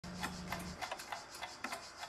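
Faint irregular clicks, a few per second, over a low hum that stops under a second in.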